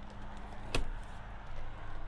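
A single sharp knock about a third of the way in, over faint handling noise, as the carpet-backed third-row seat back is moved by hand.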